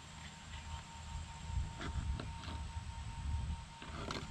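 Faint handling of a Sony Handycam camcorder: a few small plastic clicks about two seconds in as its multi-port cover is opened and the camera handled, over a low rumble.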